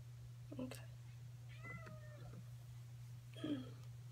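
Three short pitched vocal calls over a steady low hum: one about half a second in, a longer gliding one in the middle, and one near the end.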